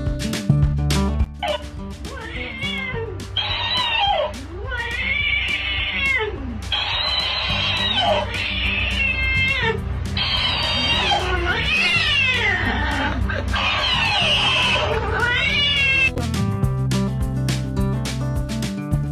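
A cat meowing and yowling over and over, a string of drawn-out calls that rise and fall in pitch, over background music; the calls stop near the end.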